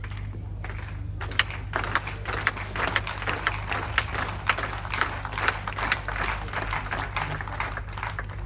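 Tennis spectators applauding. The clapping starts about a second in and thins out near the end, with single claps standing out, over a steady low hum.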